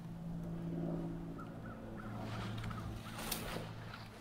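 Faint outdoor background: a steady low hum of distant traffic, with a short run of faint bird calls about a second and a half in.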